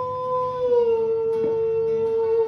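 A singer holds one long, steady high note into the microphone, the pitch dipping slightly a little after half a second in, over acoustic guitar strums.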